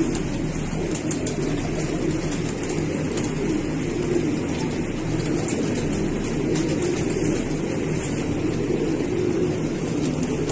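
Fancy pigeons cooing together, a steady run of overlapping coos without a break.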